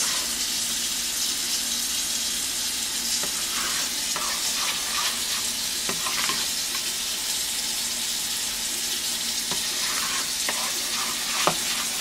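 Grits being stirred in a stainless steel pot on the stove, the utensil scraping now and then against the pot, over a steady hiss.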